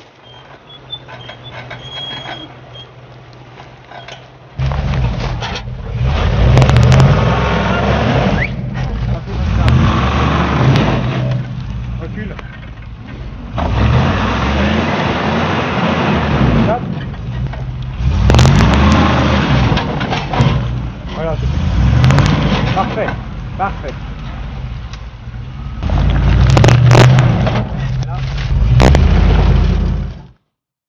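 Range Rover P38's 4.6-litre V8 running quietly, then revved hard under load about four seconds in, in uneven bursts with short lifts off the throttle, as the tyres churn through mud. Several sharp knocks come in among the revving.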